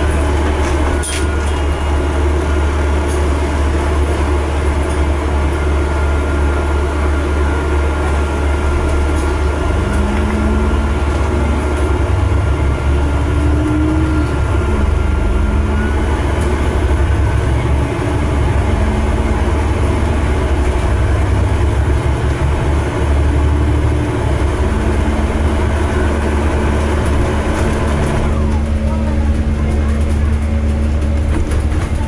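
A moving bus's engine and drivetrain heard from inside the bus: a loud, steady low drone with road rumble. The engine note rises and falls several times in the middle as the bus changes speed.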